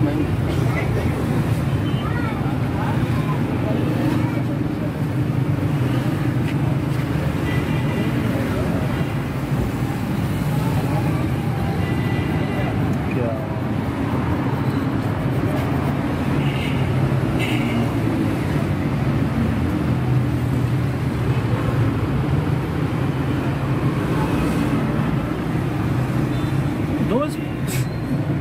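Steady low background rumble with indistinct voices mixed in.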